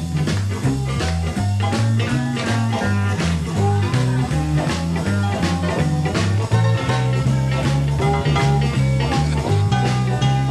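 Live electric blues band playing an instrumental passage of a jump-blues number: electric guitar over a bass line that moves from note to note with a steady drum beat.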